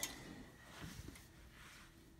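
Faint handling sounds, with a few soft knocks about a second in, as a T-shirt is laid and smoothed on a heat press platen; otherwise near-quiet room.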